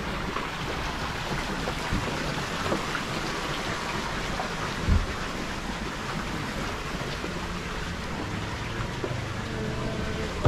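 Steady rushing hiss of water, with a single low thump about five seconds in.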